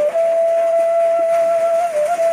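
Background music: a flute-like melody holding one long steady note, with a brief wobble in pitch near the end.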